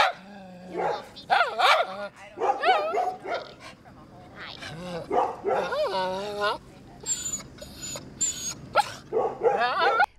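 Small dogs barking in repeated bursts, some calls drawn out and wavering in pitch.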